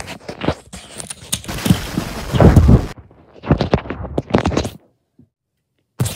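Handling noise from a phone held close: rubbing, scraping and knocks against the microphone, with a loud low rumble in the middle, then an abrupt cut to dead silence about a second before the end.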